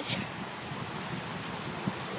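Steady outdoor rushing noise, even and without pitch, with a small click near the end.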